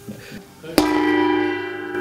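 Small hand-held gong struck once with a mallet about three-quarters of a second in, then ringing on with a shimmering cluster of steady tones that slowly fade. It is sounded to open a lodge meeting.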